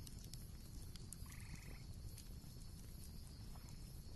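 Faint background ambience with one short animal call a little over a second in.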